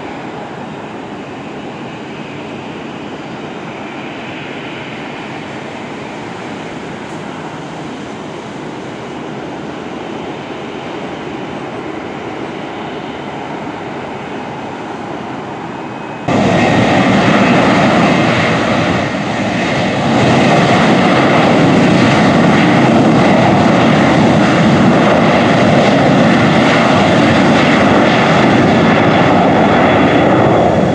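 Airplane engine noise: a steady, fairly quiet engine noise, then about halfway through a sudden jump to much louder engine noise that holds, with a brief dip a few seconds later.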